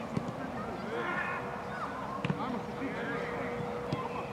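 A football being kicked on a grass pitch: sharp thuds about three times, over the calls and chatter of players at a distance.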